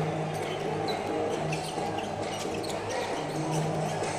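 A basketball being dribbled on a hardwood court, a series of soft bounces, with a few short high sneaker squeaks over a low hum in the hall.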